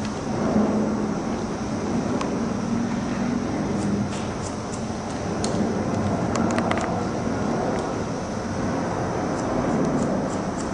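A steady rumbling background noise with a low hum. Over it come small crisp clicks of haircutting scissors snipping wet hair, with a quick run of snips about six and a half seconds in.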